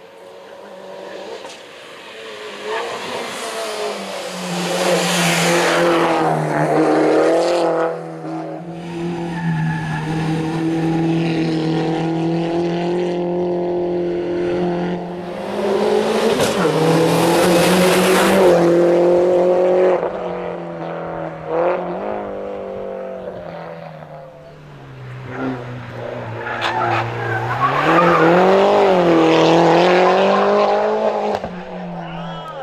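Mini Cooper S race car's four-cylinder engine revving hard up the climb. Its note climbs and drops repeatedly with gear changes and lifts for the corners, and it grows loud as the car nears and passes, most of all about halfway through and near the end.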